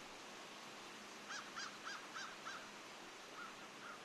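A bird calling: a quick run of five short, clipped calls about a second in, then softer calls near the end, over a faint steady hiss of woodland air.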